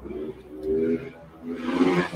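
A man's low, drawn-out wordless "ooh" of admiration, voiced twice in a row.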